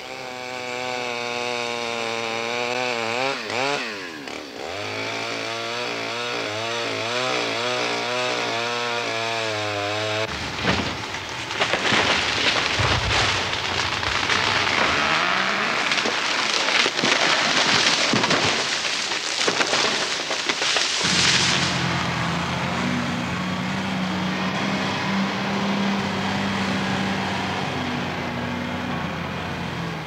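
A chainsaw cuts into a tree trunk for about ten seconds, its pitch wavering under load. Then comes a long crashing of timber and breaking branches lasting about ten seconds. For the last stretch a John Deere log skidder's diesel engine runs steadily at a low pitch.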